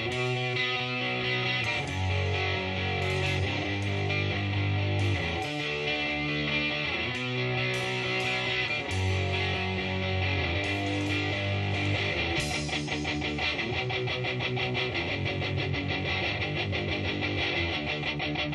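Oi! punk rock recording opening with guitar chords over a low bass line, the chords changing about every second. From about twelve seconds in, the strumming becomes a faster, steadier rhythm.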